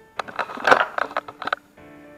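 Handling noise: a rapid run of knocks, scrapes and crackles, loudest about two-thirds of a second in, stopping shortly before the end. Background music with held tones comes in after it.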